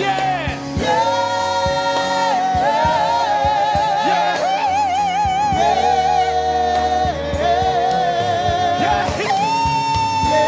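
Gospel praise team of several voices singing long held notes in harmony with vibrato, over live band accompaniment.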